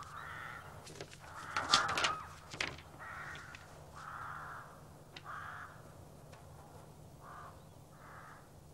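Crows cawing: a run of short harsh calls roughly a second apart, with a louder clattering burst between one and three seconds in. A faint low hum runs underneath.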